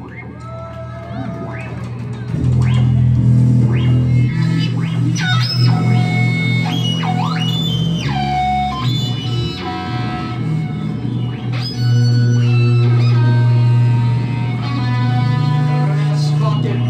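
Live band playing a song on electric guitar and bass guitar, with high sliding, gliding tones over a steady low bass; the full band comes in loud about two seconds in.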